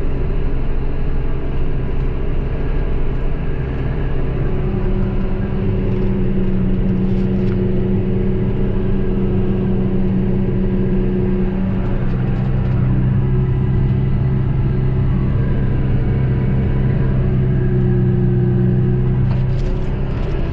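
John Deere 6115R tractor engine heard from inside the cab, running steadily under load while pulling a seed drill. It makes a continuous drone, and a deeper hum grows stronger about five seconds in.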